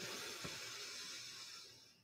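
Faint breathy hiss of a long, slow inhale that fades away over about a second and a half, then cuts to silence.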